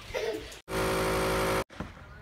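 A motor or engine running with a steady, even hum for about a second, starting and cutting off abruptly. It is flanked by briefer, quieter snatches of other sound.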